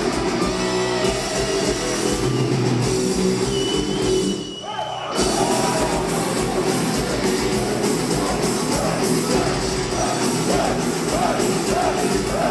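Live metal band playing loud: distorted electric guitar and drum kit through a hall PA. The band briefly drops out a little over four seconds in, then comes straight back in.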